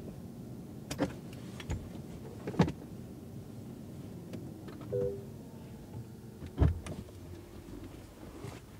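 Car cabin sounds as the Lexus RX350h is shut down: a few sharp clicks and knocks, a short two-note chime about five seconds in, then a loud clunk near the end as the driver's door unlatches and opens.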